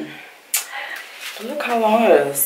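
A woman's voice, drawn out and without clear words, trailing off at the start and rising again in the second half, with a brief sharp click about half a second in.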